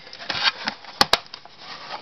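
A plastic CD case being slid back into a row of plastic DVD cases, rubbing and scraping against them, with two sharp clicks close together about halfway through.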